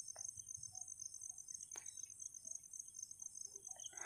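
Quiet background with a faint, steady high-pitched tone and one faint click a little under two seconds in.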